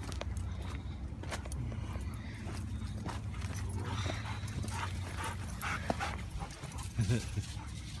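Dogs playing together, giving short, faint vocal sounds, with a stronger one about seven seconds in, over a steady low rumble.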